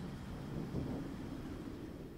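Faint steady rushing noise with no distinct sounds in it, heaviest in the low range.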